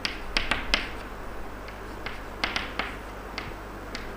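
Chalk tapping on a chalkboard as letters are written: a quick run of sharp clicks at the start, another run about two and a half seconds in, and a single click shortly after.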